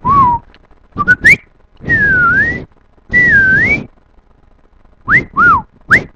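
A man imitating R2-D2's beeps by whistling into a microphone. It comes as a series of short chirps and warbling pitch glides: two quick rising chirps about a second in, two longer swooping whistles that dip and rise in the middle, and two short chirps near the end.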